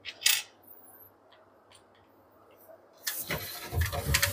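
Corded electric drill driving a screw through a wooden runner strip into the cabinet side, starting about three seconds in and running on. A short, loud sharp noise comes just after the start.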